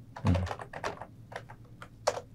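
Typing on a computer keyboard: a quick run of light, irregularly spaced key clicks.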